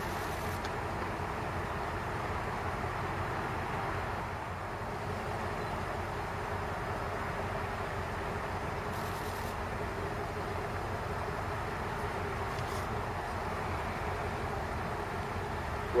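Steady distant city traffic rumble, with a faint steady hum under it.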